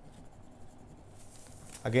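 Faint scratching of a pen drawing on paper, with a few light strokes early on.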